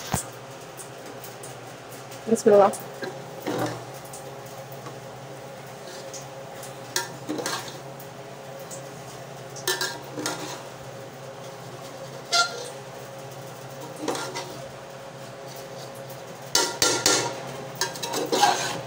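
A spoon scraping and knocking against the sides of a large aluminium cooking pot as layered biryani is mixed through once cooked. The strokes are scattered, every second or two, with a quicker cluster near the end, over a steady low hum.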